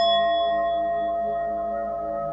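A small metal singing bowl ringing after a single strike, one clear tone with a few higher overtones slowly fading away.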